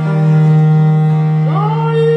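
Early Baroque continuo music: a long, steady low note is held under a female voice that slides upward into a sustained high note about one and a half seconds in.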